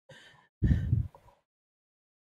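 A person's breath: a soft, breathy inhale, then a louder voiced sigh about half a second in, lasting under a second.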